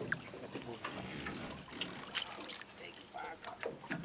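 Hooked peacock bass splashing at the surface beside the boat: scattered small splashes and sloshing water.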